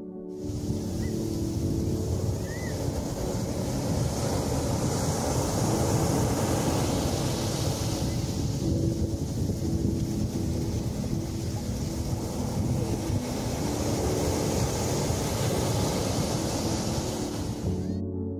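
Sea surf washing onto a sandy beach, a steady rush of waves with wind buffeting the microphone.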